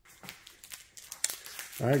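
Faint rustling with a few sharp clicks, like handling noise from a held phone or plastic card sleeves. A man's voice says "all right" near the end.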